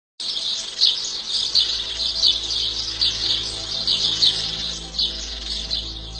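Birds chirping: high chirps repeated over and over, over a low steady drone.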